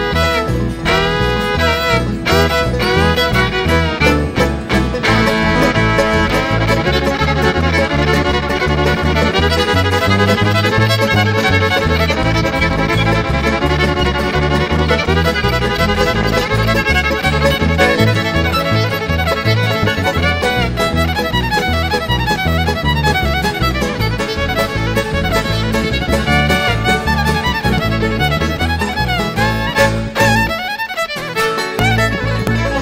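Bluegrass band playing an instrumental break led by a bowed fiddle, over acoustic guitar, banjo and upright bass keeping a steady beat. The fiddle slides up and down on its notes in the first few seconds.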